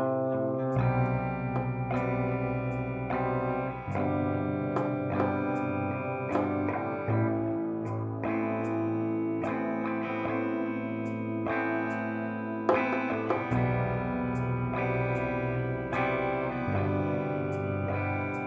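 Instrumental music led by plucked guitar: ringing notes picked one after another, the chord changing every second or two.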